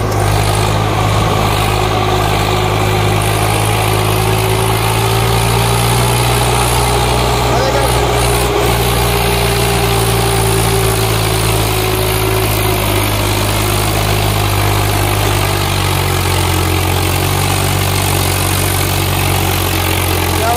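Swaraj 744 XT tractor's three-cylinder diesel engine running steadily under heavy load, pulling a fully loaded trolley up a sandy slope.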